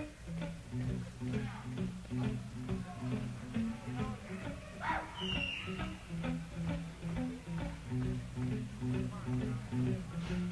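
Live high school jazz band playing: a bass riff of short, repeated low notes over light drum ticks, with a brief high gliding tone about halfway through.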